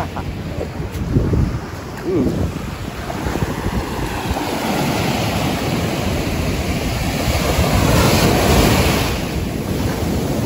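Surf breaking and washing up a sandy beach; the wash swells from about three seconds in to its loudest around eight seconds, then eases. Wind rumbles on the microphone underneath.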